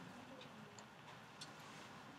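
Near silence: room tone with three faint, short clicks at irregular intervals.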